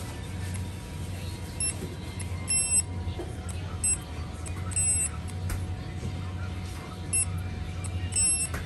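Keyence handheld order terminal beeping as shelf labels are scanned for a stock order: five short high electronic beeps, a quick chirp followed about a second later by a longer beep, in repeated pairs.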